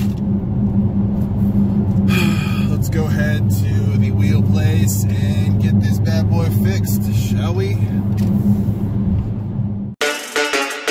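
Steady low drone of a Dodge Challenger Scat Pack's 392 HEMI V8 and tyre noise heard inside the cabin while cruising on the highway, with indistinct talk over it. The drone cuts off abruptly at the very end.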